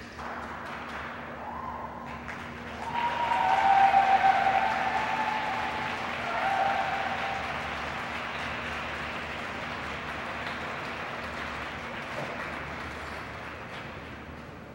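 Rink audience applauding at the end of an ice dance program, swelling to its loudest about four seconds in and then tapering off, with a few held cheering calls over the first half.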